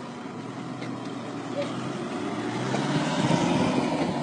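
A pickup truck's engine running as it drives up and passes close by, growing steadily louder toward the end.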